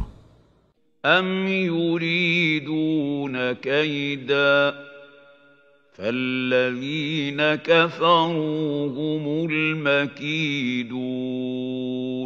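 A male reciter chanting Quranic verses in Arabic in the measured, melodic style of tajwid recitation. He sings two long phrases with drawn-out held notes, the first starting about a second in and the second about six seconds in.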